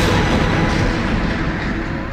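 A noisy, rattling passage without clear notes in music played back from a TDK AD-X46 cassette on a Маяк-233 deck. The beat drops out, and the sound grows duller and slightly quieter over the two seconds.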